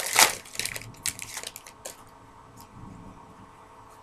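A baseball card pack wrapper crinkling and tearing as the pack is opened. It is loudest in one burst at the start, then a few sharp crackles follow over the next two seconds before it goes quiet.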